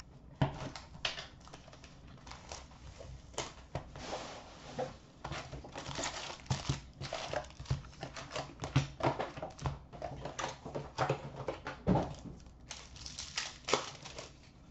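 Plastic shrink wrap being torn off a sealed Upper Deck SP Authentic hockey card box and crinkled, then the cardboard box opened and its foil packs handled. The sound is an irregular run of crackles, rustles and small clicks and knocks.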